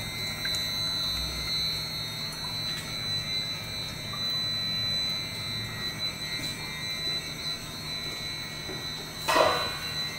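Desktop single-screw extruder running: a steady machine hum and fan noise with a thin, constant high whine from its variable-frequency-driven motor. A short noise comes near the end.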